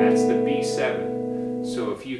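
A B7 chord strummed once on a semi-hollow electric guitar, ringing out and slowly fading.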